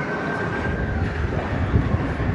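Low rumble of a passing vehicle in city traffic, with a steady high-pitched squeal that stops about a second in.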